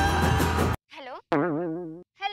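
Background music cuts off abruptly about three-quarters of a second in. After a brief gap come two short comic sound effects with a wobbling, warbling pitch; the second fades away.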